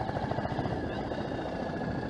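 Small motorcycle's engine running at low, steady road speed, a rapid even pulsing with road and wind noise around it.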